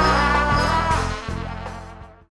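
Live band music, sustained notes over a steady bass line, fading out over the last second.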